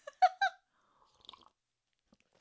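A woman's two short bursts of laughter, then faint mouth sounds of sipping and swallowing from a mug.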